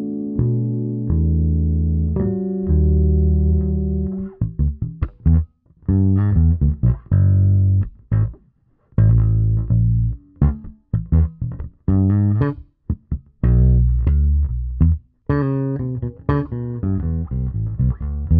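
Fodera Monarch Standard P four-string electric bass with an Aguilar pickup and the tone control fully open, sounding bright. For the first four seconds or so it plays ringing harmonics that sustain and overlap; the rest is short, clipped plucked notes with brief gaps between them. The sound is a mix of half miked amp and half direct signal, lightly compressed.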